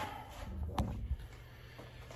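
Handling noise from a phone camera being picked up and carried by hand: a low rumble with one sharp click a little under a second in.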